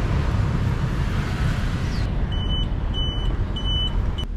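Steady city street traffic noise at a road crossing, a dense rumble of vehicles. In the second half, short high beeps repeat about every 0.7 s.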